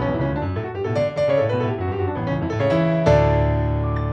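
Ravenscroft 275 virtual grand piano, a sampled concert grand played from a keyboard, playing a busy passage of quick notes over a bass line. About three seconds in, a loud full chord with a deep bass is struck and left ringing.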